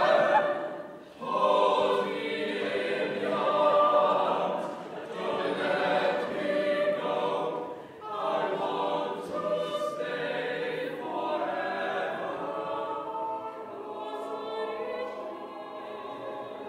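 A small unaccompanied group of men's voices and one woman's voice singing in close harmony. The phrases break briefly about a second in and again about eight seconds in, and the singing grows quieter toward the end.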